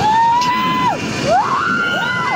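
Riders screaming on a 90-metre free-fall drop tower as the countdown runs out: overlapping held screams, each rising sharply then holding its pitch, one after another. Wind noise on the microphone runs underneath.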